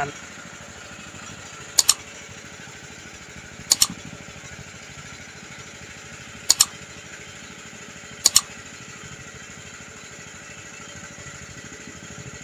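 Four crisp double mouse-click sound effects, roughly two seconds apart, from an on-screen like-and-subscribe animation. Behind them the engine of a small wooden motorboat (pompong) drones steadily.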